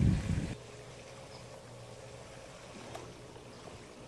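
Wind buffeting the microphone for about half a second, then faint water movement in an above-ground swimming pool over a low steady hum.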